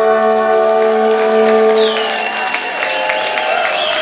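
A live band with horns holds its final chord until it stops about halfway through. The audience then applauds and cheers, with a long high whistle over the clapping.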